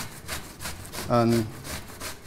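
Raw pumpkin, skin on, grated on the coarse side of a metal hand grater: a steady run of scraping strokes, about three a second.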